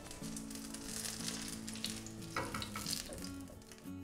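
Vegetable oil sizzling and crackling around an apple fritter frying in a pan, under soft background music.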